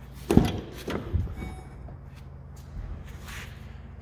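Driver's door of a 2008 GMC Sierra 3500HD pickup being opened: a sharp latch clunk about a third of a second in, then a couple of lighter knocks about a second in.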